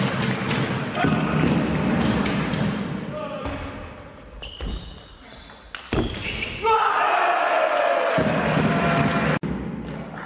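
Table tennis rally: the ball clicks sharply off the bats and the table, with short high squeaks of shoes on the court floor. Then comes a loud shout falling in pitch, held for a few seconds and cut off abruptly.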